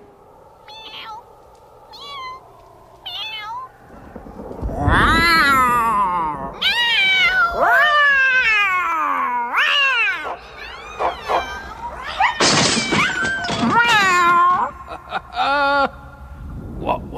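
Cat yowling: a run of long, loud meows that rise and fall in pitch, starting about four seconds in, with a few faint short chirps before them.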